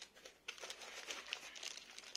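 Thin clear plastic sleeve around a laptop crinkling as the laptop is handled and lifted out of its foam packing. The crinkling starts about half a second in as a dense run of small crackles.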